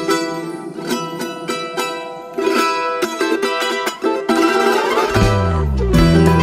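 Music led by a strummed charango playing bright, quick chords. Near the end a falling sweep is heard and a deep bass line comes in.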